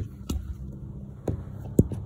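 Handling noise from a handheld camera being worked down among the engine-bay hoses: four short knocks and bumps, the loudest near the end, over a steady low hum.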